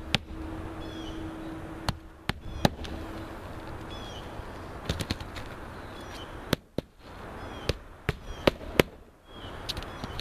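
A hammer driving nails through asphalt roof shingles. The sharp strikes come in irregular groups of a few quick blows per nail, with a faster run of blows near the end.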